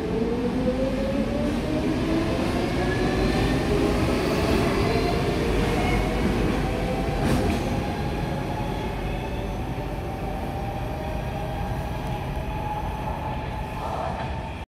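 Stockholm metro C14/C15 train accelerating away from the platform: its motor whine rises steadily in pitch over the rumble of the wheels, then levels off and fades as the train goes into the tunnel, with a single clack about seven seconds in.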